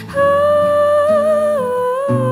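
A female vocalist holds one long note with a slight vibrato and steps down in pitch near the end, over a soft acoustic-guitar accompaniment.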